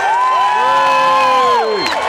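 Large crowd cheering, with several long overlapping whoops that slide down in pitch near the end.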